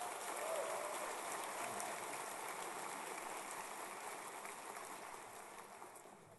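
Audience applauding, slowly dying away.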